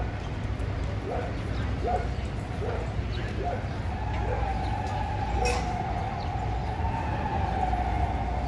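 Small dogs barking in short, separate yaps, about six in the first half, over a steady low rumble of city traffic. From about halfway a long, nearly steady high tone rises over it and carries on through the rest.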